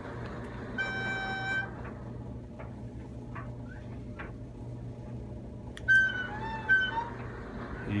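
Steady low electrical hum from the powered emergency light bar. A short steady beep sounds about a second in, and near the end a sharp click is followed by a few wavering higher tones.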